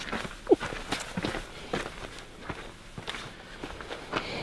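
Footsteps of a person walking on grassy dirt ground: a series of soft, irregular steps, with a brief falling squeak about half a second in.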